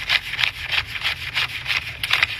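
Paper banknotes being counted by hand, bills flicked off the stack one after another in a quick, even run of short papery flicks, about four a second.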